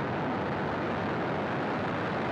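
Falcon 9 rocket's nine Merlin engines firing at full thrust seconds after liftoff: a steady, unbroken rush of rocket exhaust noise.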